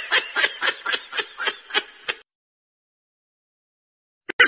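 Laughter: a rhythmic run of short 'ha' pulses, about four a second, that cuts off suddenly about two seconds in.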